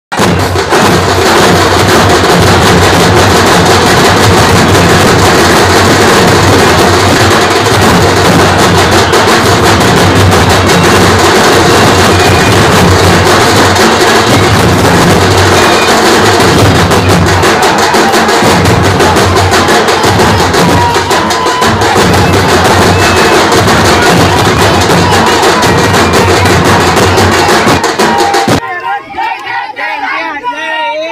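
Loud, dense drumming and music with crowd noise, running without a break and stopping abruptly about a second before the end.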